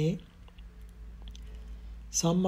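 A spoken word ends right at the start, then a pause with only a faint low hum of the recording's background and a few faint, small clicks.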